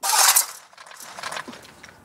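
Steel coal shovel scooping into a pile of coal lumps: a loud scrape and clatter of coal in the first half second, then fainter scraping and rattling that dies away.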